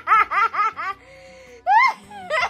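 High-pitched laughter: a quick run of "ha-ha-ha" pulses, about six a second, dying away within the first second. Then one high, rising-and-falling squeal of laughter near the end.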